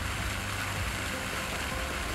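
Water fountain jets splashing steadily, an even hiss of falling water.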